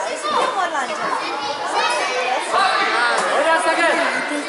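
Several children's voices shouting and calling out over one another, high-pitched and unintelligible, louder in the second half.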